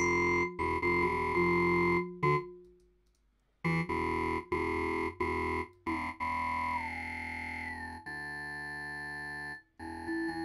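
Synthesizer notes played through Bitwig Studio 2's Resonator Bank effect, ringing with metallic resonant overtones. After a brief pause a few seconds in, longer held notes follow, and their resonant pitches slide down and then up as the effect's settings are changed.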